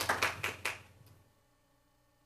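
Applause of separate, distinct claps dying away and stopping under a second in.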